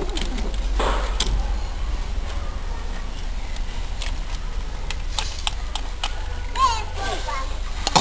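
Young children's voices and short exclamations in the background as they play, over a steady low rumble, with a few light clicks about five to six seconds in.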